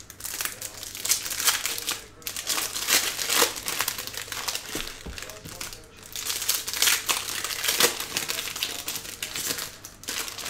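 Foil wrappers of Bowman Baseball jumbo card packs crinkling as they are handled and torn open by hand. The crackling comes in dense runs, with short lulls about two and six seconds in.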